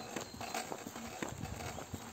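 Footsteps of a hiker walking on a dirt path, faint irregular steps and light knocks.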